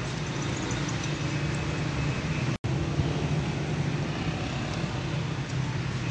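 Steady road traffic noise with a low hum. The sound cuts out for an instant about two and a half seconds in.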